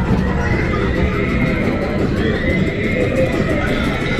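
Recorded horse whinnying from an arcade horse-racing derby game, a long drawn-out call over the steady din of arcade machines.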